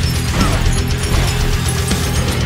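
Heavy metal guitar cover music: distorted electric guitar played through a Laney Ironheart high-gain amp, riffing on the low strings in a fast, even, clipped rhythm over a heavy low end.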